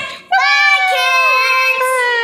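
Young girls' voices singing out a long, drawn-out high note after a brief break near the start, the pitch sliding slowly down.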